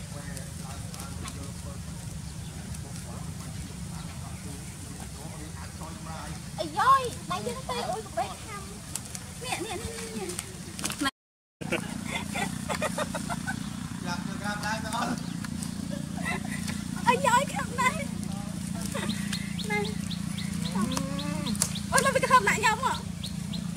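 Goats bleating in wavering calls, mixed with a woman's voice, over a steady low hum. The sound drops out completely for a moment about halfway.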